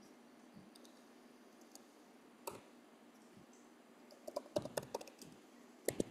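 Faint computer keyboard keystrokes as a few words are typed: a lone click about two and a half seconds in, a quick run of keystrokes between four and five seconds in, and one more near the end.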